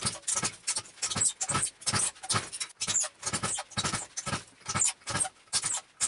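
A 66cc two-stroke motorized bicycle kit engine being turned over by hand without firing, puffing in an even rhythm of about three chuffs a second. The engine does not catch.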